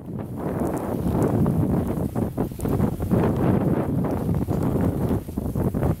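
Strong, gusty wind buffeting the microphone: a dense low rumble that rises and falls throughout, in whiteout conditions.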